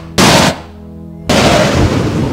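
Thunder sound effect played over a PA: two short crackling cracks near the start, then a longer crash that sets in a bit past the middle and carries on.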